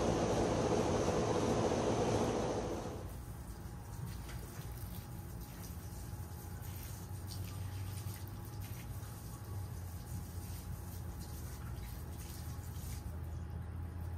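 Water poured from a glass jar onto a planted shrub's soil and gravel, a steady splashing pour that stops about three seconds in. After it a low steady hum remains, with a few faint ticks.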